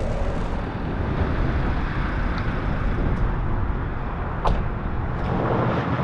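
Steady road and engine noise inside a moving van's cab, a low rumble, with one sharp click about four and a half seconds in.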